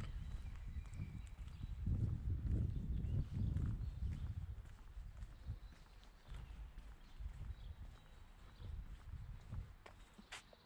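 Footsteps of someone walking while filming, with gusts of wind buffeting the microphone, heavier in the first half and easing after about five seconds.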